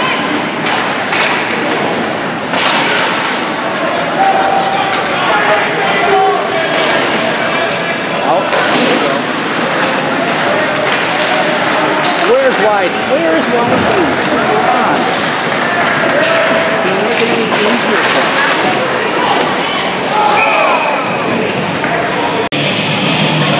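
Ice hockey game heard from the stands of an indoor rink: spectators talking and calling out over the play, with scattered thuds of the puck, sticks and players hitting the boards.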